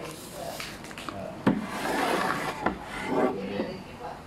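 Plastic snack packaging being handled: bags rustling and crinkling, with a sharp knock about a second and a half in and another just before three seconds.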